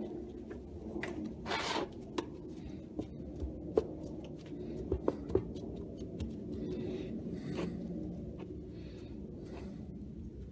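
Nitrile-gloved hands kneading a soft lump of clear silicone caulk worked with Dawn dish soap: rubbing and squeezing, with scattered small clicks and taps.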